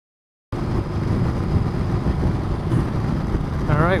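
Ducati Multistrada 1200's L-twin engine running, mixed with wind noise on the microphone while riding at road speed. The sound cuts in suddenly about half a second in.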